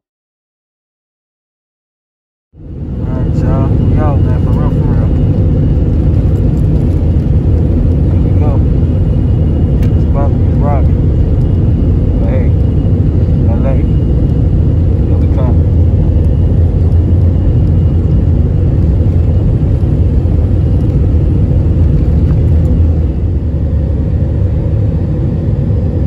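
Jet airliner's engines and runway rumble heard from inside the cabin during the takeoff roll: a loud, steady, deep noise that cuts in suddenly a few seconds in.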